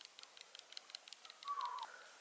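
Wild turkey flock: about one and a half seconds in, a single short call that dips in pitch at its end, over faint, quick, irregular ticking.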